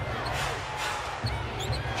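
A basketball being dribbled on a hardwood court, repeated low bounces over the steady noise of an arena crowd.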